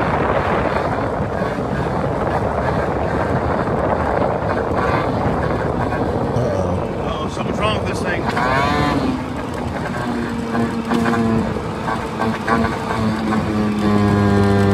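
A moped's small engine running under way, recorded on a phone with heavy wind rush on the microphone. About eight seconds in the engine note swoops up and down, then settles into a steady hum: the engine is choking down, which the rider fears means something is badly wrong, perhaps a clog.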